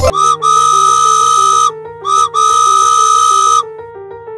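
Steam-train whistle sound effect, blowing twice: each time a short toot running straight into a long, steady whistle, over background music.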